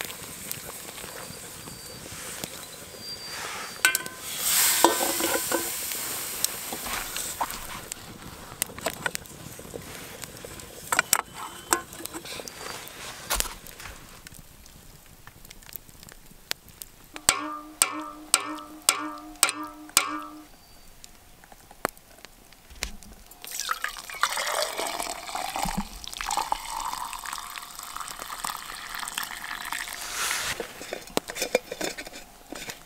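Hot coffee poured from a blackened camp pot into a steel travel mug in the last few seconds, the pitch rising as the mug fills. Earlier, water sloshes as coffee grounds are stirred into the pot by hand.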